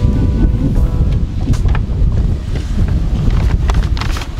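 Wind buffeting the microphone: a loud, low rumble throughout, with a few short crackles. Background music ends in the first second or so.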